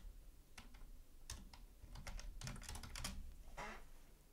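Typing on a computer keyboard: a faint, irregular run of keystrokes as a word is typed out.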